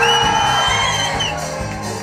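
Live band music playing loud in a hall while the crowd cheers. A high held call rises slightly through the first second and bends upward as it ends.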